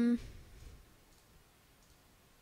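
Faint computer mouse clicks, a few brief ticks over a quiet background, as frames are stepped through one at a time.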